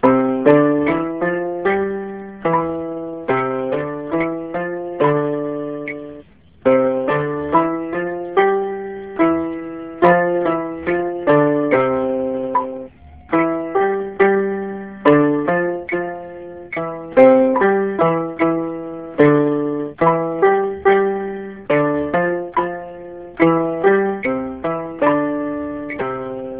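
Electronic keyboard in a piano voice playing finger-dexterity exercises with both hands: even, repeating note patterns at a metronome tempo of 70. There are brief breaks about six and a half seconds in and again near thirteen seconds.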